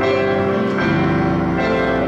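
Organ playing slow, held chords, moving to a new chord about a second and a half in.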